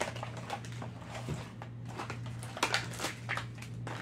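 Clear plastic packaging of a fishing lure kit being handled and opened: scattered crackles and clicks of the plastic, over a steady low hum.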